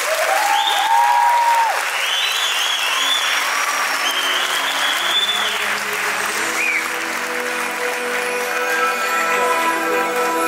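Theatre audience applauding, with some cheering over it, as a musical number ends. Show music carries on underneath and builds into the next passage about halfway through as the clapping fades.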